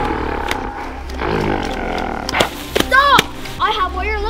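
Roaring from a play fight between a costumed gorilla and an inflatable T-Rex, with a low growl about a second in. It is followed by a few sharp knocks and short vocal cries near the end.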